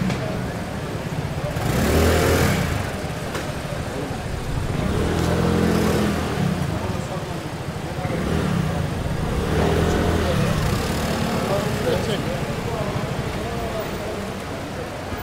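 Busy street traffic: car engines swelling and fading as vehicles pass, loudest about two seconds in, with indistinct voices of people nearby.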